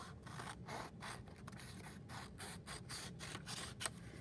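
Scissors cutting through a sheet of plain paper in a run of short, evenly repeated snips, about four a second, trimming off a strip along a fold.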